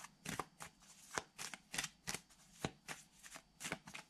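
A tarot deck being shuffled by hand: a quick, uneven run of soft card slaps and rustles, about four a second.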